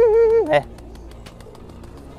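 A man's drawn-out, level 'eeh' call to the pigeons, about half a second long, with a short second call right after. Then quieter background with faint scattered ticks.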